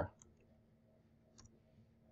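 Two faint, brief clicks at a computer, one just after the start and one about a second later, over near silence.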